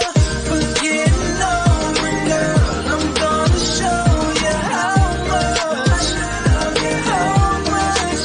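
Background pop/R&B music with a beat whose bass notes slide down in pitch, repeating about once a second, under a melodic line.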